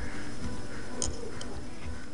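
Lego pieces handled and pressed together close to the microphone: a low rustling rumble with two small clicks about a second in.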